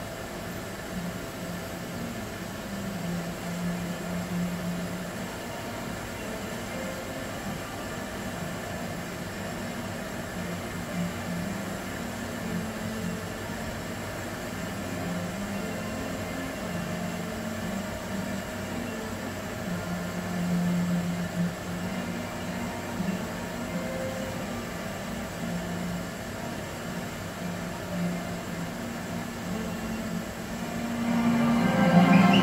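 Steady hiss of background noise from a television broadcast, with a faint low hum that comes and goes.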